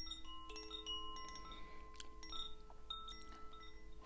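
Gentle background music of soft, chime-like notes, several held tones overlapping as new ones come in one after another.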